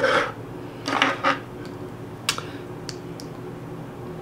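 Handling noise of makeup items, a compact and a brush being picked up and moved: two short rustles about a second apart, then two sharp little clicks.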